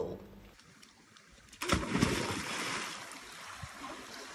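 A person diving into a swimming pool: a sudden splash about a second and a half in, then churning water that settles into a steady softer wash.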